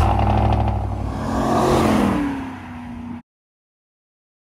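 Chevrolet Silverado 1500 pickup's engine starting and revving once, its pitch sinking back after the rev. The sound cuts off abruptly a little after three seconds.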